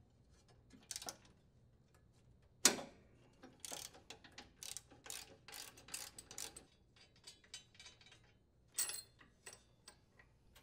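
A socket ratchet clicking in short runs as it unthreads a nut, with one sharp metal knock a little before the clicking starts.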